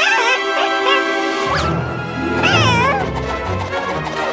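Bouncy cartoon background music with a high, wavering creature voice over it in short excited cries; a low bass beat comes in about a second and a half in.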